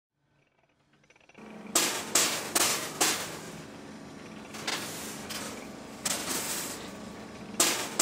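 About eight sharp, irregularly spaced strikes over a steady low hum, starting about a second and a half in after silence.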